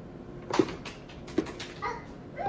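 A kitchen knife chopping cooked chicken on a plastic cutting board: two sharp knocks a little under a second apart. A short high whine sounds near the end.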